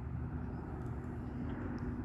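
Steady low rumble with a constant low hum and an even level throughout.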